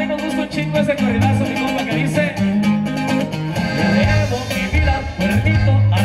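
A live norteño band playing: button accordion, guitar, electric bass and drums together, with a steady bass line under the accordion.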